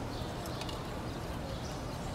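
Small birds chirping in short high calls, several times over the two seconds, over a steady low background noise.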